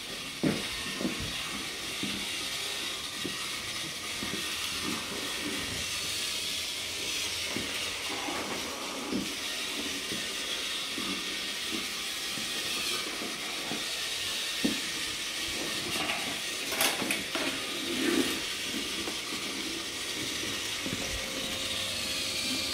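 Battery-powered TrackMaster toy trains running on plastic track: a steady whirring hiss of their small motors, with scattered clicks and knocks from wheels and track.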